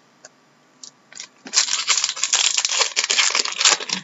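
A trading-card pack wrapper being torn open and crinkled. A few faint rustles come first, then from about a second and a half in there are about two seconds of loud, continuous crinkling and tearing.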